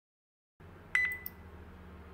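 A computer mouse clicking over a low, steady electrical hum: one sharp click with a brief high ring about a second in, then a softer click just after.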